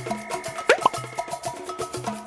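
Playful cartoon background music with a steady, bouncy beat of short notes. A quick upward-sliding sound effect comes about two-thirds of a second in.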